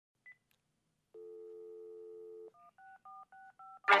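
Telephone dial tone held for about a second and a half, then five quick touch-tone keypad beeps as a number is dialled, after a brief beep near the start. Music comes in right at the end.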